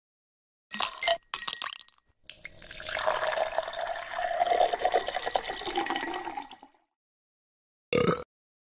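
A few clinks of ice or glass, then liquid pouring into a glass for about four seconds.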